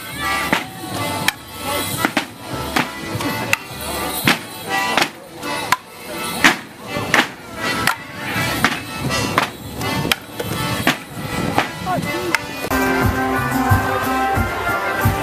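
Morris dancers' wooden sticks clashing sharply in time, about every three-quarters of a second, over a live folk band. Near the end the sticks stop and a different, steadier band tune takes over.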